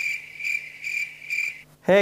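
A cricket chirping steadily: a high, pulsing trill about three times a second that cuts off suddenly near the end.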